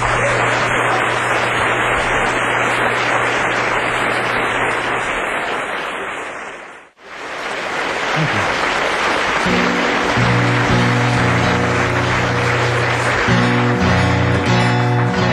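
A club audience applauding at the end of an acoustic song. About halfway through, the applause dips out for a moment, then returns as an acoustic guitar starts picking notes for the next song.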